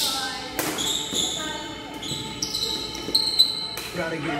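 Badminton rally: sharp racket hits on the shuttlecock and sneakers squeaking on the court floor, the squeaks from about halfway through to near the end.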